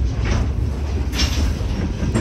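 Freight cars rolling slowly past close by: a steady low rumble of steel wheels on rail, with a clack about a second in and another just before it ends as wheels pass over the track.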